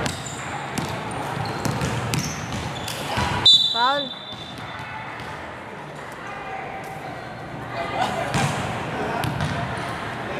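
A basketball being dribbled on a hardwood gym floor, with short bounces in the first few seconds. About three and a half seconds in there is one loud, shrill high squeak, then voices and the echoing hubbub of the gym.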